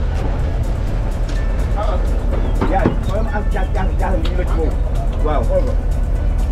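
A boat's engine running with a steady low rumble under music with singing.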